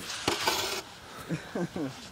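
Scraping and rustling of the phone being handled close to its microphone for the first part, with a few sharp clicks, followed by a faint voice in the background.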